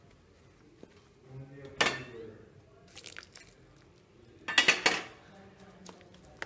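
Metal utensil clinking and scraping against a steel bowl while rice flour dough is mixed, with a sharp clatter about two seconds in and a quick run of loud clinks near the end.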